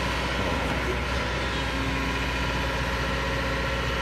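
Kobelco crawler excavator's diesel engine running steadily. A low, even hum runs throughout, and a higher steady tone joins about halfway through.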